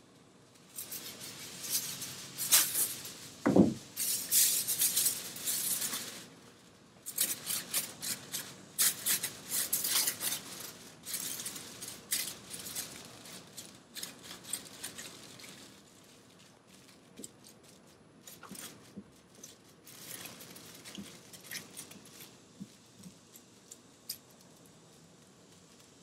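Aluminium foil crinkling and rustling as it is wrapped and pressed by hand around a roof rack, with a brief downward-sliding whine about three and a half seconds in. The crackling is loudest in the first ten seconds or so and turns to fainter, scattered crinkles later.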